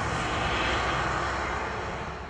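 Articulated lorry driving away around a bend, a steady run of engine and tyre noise that fades out toward the end.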